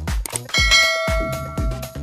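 A notification-bell ding sound effect rings about half a second in and fades away, over electronic dance music with a steady beat.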